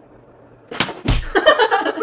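A quick whoosh a little under a second in that falls steeply in pitch into a low thump, followed by a brief busy jumble of higher sounds.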